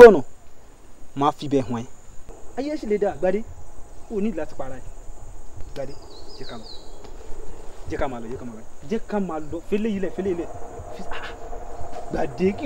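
Insects calling steadily in woodland, a thin high even tone, under short broken phrases of a man's voice.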